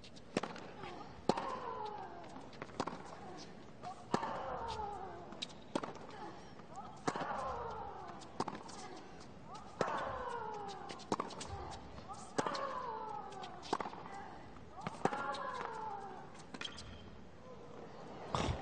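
Tennis rally on a hard court: racquet strikes on the ball about every second and a half. On every other shot a player lets out a long grunt that falls in pitch.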